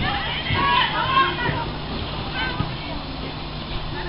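Distant high-pitched voices shouting and calling on a football pitch, mostly in the first second and a half, over a steady outdoor background noise.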